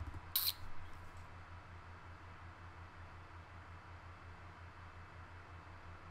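A single sharp click of a computer key about half a second in, with a few faint ticks just after, over a steady low electrical hum.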